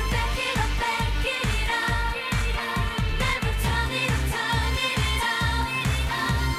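Female K-pop group singing over a dance-pop track with a fast, heavy bass beat, including the sung line "never back it up".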